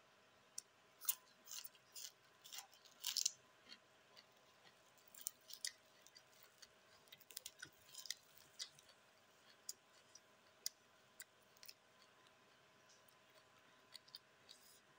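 Close-up mouth sounds of someone chewing crunchy raw vegetables: irregular sharp crunches and smacks, loudest in a cluster about one to three seconds in. A raw green vegetable stalk is also snapped by hand.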